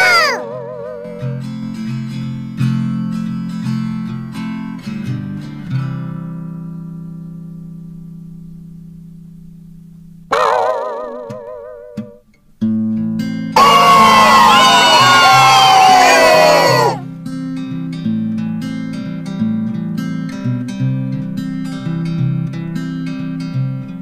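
Background music with a plucked acoustic guitar, its notes dying away. About ten seconds in, a short wobbling tone cuts in. From about 13 to 17 seconds, a loud burst of many sliding, warbling tones plays over it.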